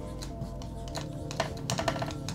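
Marker writing on a whiteboard: a run of short taps and scratches, thicker and louder in the second half, over quiet background music with steady held notes.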